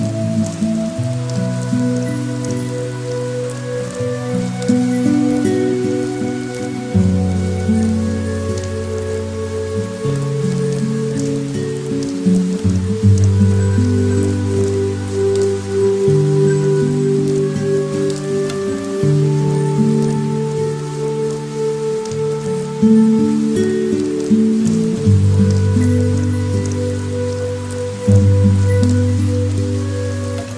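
Steady rain falling on pavement, with scattered drop ticks, under slow instrumental music of sustained low chords that change every two or three seconds; the music is the louder of the two.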